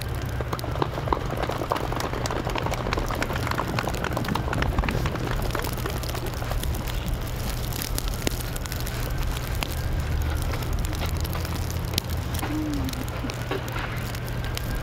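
Falling snow pattering on the tent canopy and microphone: a dense, steady crackle of tiny ticks over a low, steady rumble.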